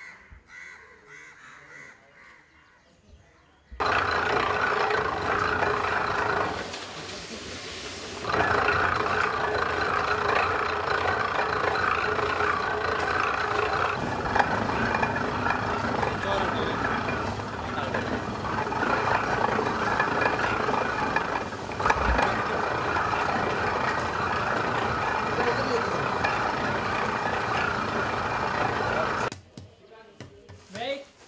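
Geared clay-processing machine running steadily. It starts suddenly a few seconds in, eases briefly twice and stops just before the end. Faint crow calls come before it starts.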